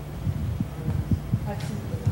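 Irregular soft, dull low thumps over a steady low hum, with a faint voice murmuring briefly near the middle.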